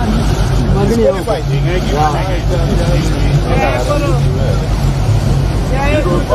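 A motorboat's engine running steadily under way, a low continuous drone, with voices talking over it.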